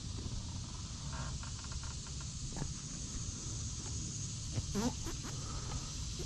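Quiet outdoor background: a steady high insect drone over a low rumble, with a few faint ticks about a second in and a brief faint call near the end.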